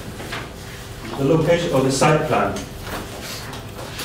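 A man speaking briefly in a room, with a couple of short knocks.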